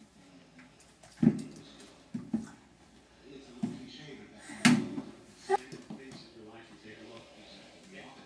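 Scattered knocks and bumps as a crawling baby handles things in a storage bin on a hardwood floor, the sharpest knock a little past halfway. Short baby vocal sounds come in between.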